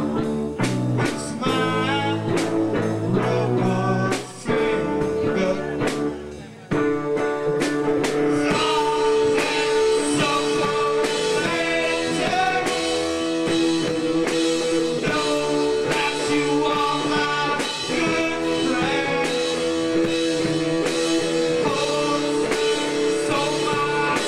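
Live rock band with electric guitar, bass, keyboard, drums and trombone playing, with a voice singing over it. The music drops out briefly twice, about four and a half and six and a half seconds in, then carries on with long held notes.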